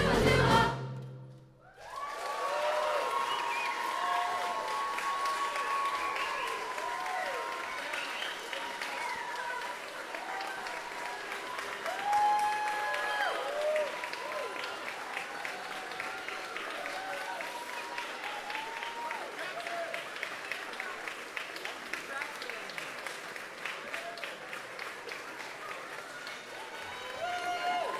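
A choir and band end a song on a loud final chord, and about two seconds later a large audience breaks into sustained applause with cheers and whoops.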